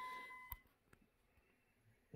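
A steady electronic beep tone that cuts off with a click about half a second in, then near silence with a few faint ticks.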